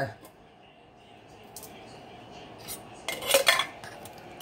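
Empty opened tin cans being handled: a few light clicks, then a quick cluster of metallic clinks and clatter about three seconds in as the cans knock against each other.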